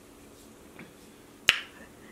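A single sharp finger snap about one and a half seconds in, against faint room tone.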